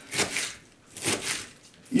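Kitchen knife slicing through white cabbage on a plastic cutting board: two crisp cutting strokes about a second apart.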